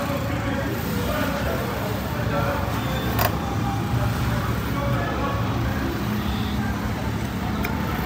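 Steady low rumble of background noise with indistinct voices, and a single sharp click about three seconds in.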